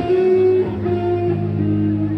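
Live rock band playing: an electric guitar holds long notes over a steady low bass note, heard loud through a concert sound system.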